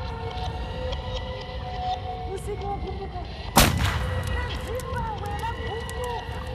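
A single loud gunshot about three and a half seconds in, over a steady low rumble and faint, wavering distant voices.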